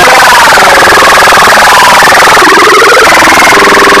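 Cartoon soundtrack put through heavy distortion effects: a loud, harsh, rapidly buzzing warble with a wavering pitch, steady in level throughout.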